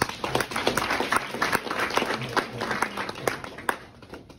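A small audience applauding, dense hand clapping that dies away near the end.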